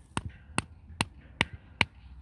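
A hammer striking a thin metal ground stake, driving it into the turf: five sharp strikes, evenly spaced at about two and a half a second.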